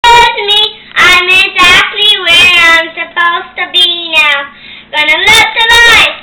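A child singing loudly without clear words, in long gliding notes with short breaks between phrases.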